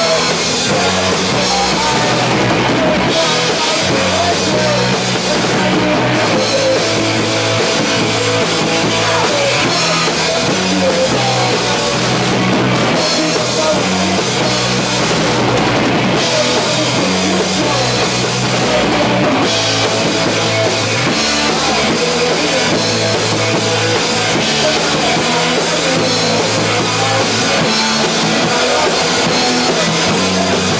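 A live punk rock band playing loud and without a break: a drum kit with bass drum and cymbals, and electric guitar.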